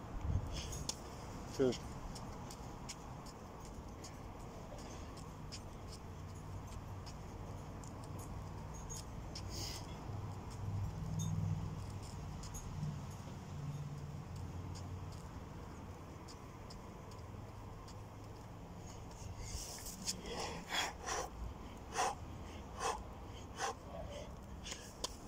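A man breathing hard near the end of an hour of five-pump burpees, with a quick run of sharp exhalations, a little faster than one a second, in the last few seconds. A low rumble rises and fades in the middle.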